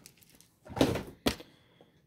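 Foil trading-card packs handled: a short rustle about a second in, then a single sharp tap.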